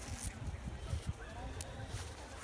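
Low rumble and light rustling as a child moves about on a tent groundsheet among plastic bags, with a faint brief child's voice a little under a second in.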